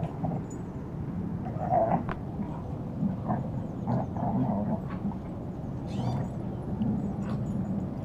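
Two dogs play-fighting, growling and snarling at each other as they wrestle, with louder rough bursts about two seconds in and again around four seconds.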